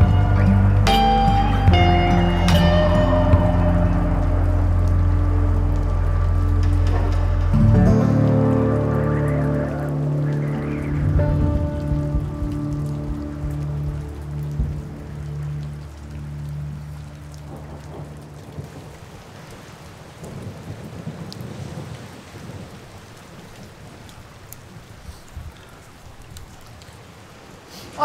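Soundtrack music with held notes and deep low tones that fades out over the first half, leaving steady rain.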